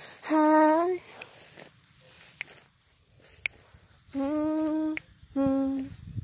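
A woman's unaccompanied voice singing wordless hummed notes: one slightly rising note near the start, then after a pause of about three seconds two shorter notes near the end.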